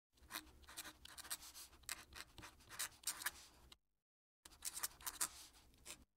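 Fountain pen nib scratching across paper while writing a cursive signature in quick strokes. The writing comes in two stretches, split by a short gap of dead silence a little before the four-second mark.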